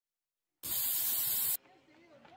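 Aerosol spray paint can spraying: one hiss of about a second, starting about half a second in and cutting off suddenly.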